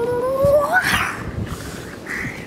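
A small child's playful pretend dinosaur roar: one high, drawn-out squeal rising in pitch for under a second, breaking into a breathy rush.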